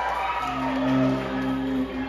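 A stage band's keyboard holding a sustained low chord that comes in about half a second in and stays steady, with a smooth falling tone above it.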